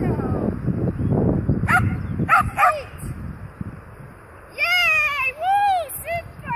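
A dog giving short, high, falling yips about two seconds in, then a longer whine and an arched yelp near the end, over a low rumble of wind on the microphone at the start.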